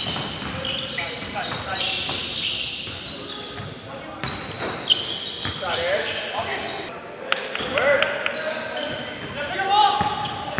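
Basketball game in a large gym: a basketball bouncing on the court floor in repeated sharp knocks, short sneaker squeaks on the floor, and players' voices calling out, all with the echo of a big hall.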